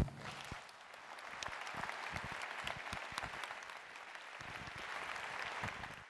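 Audience applauding in a large hall, building up about a second in and then holding steady.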